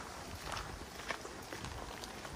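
Footsteps of hikers walking on a dirt trail, a few faint steps about half a second apart.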